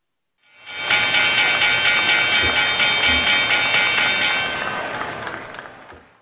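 Synthesized audio logo sting: a bright sustained chord of many tones swells in about a second in, pulses rapidly and evenly, then fades out over the last two seconds.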